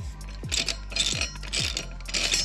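Ratchet wrench clicking in short runs, about two strokes a second, as a sprocket bolt on a motorcycle rear wheel hub is spun out. A steady music beat runs underneath.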